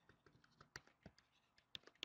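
Faint, irregular clicks and taps of a stylus writing on a tablet, a few ticks a second, growing a little louder near the end.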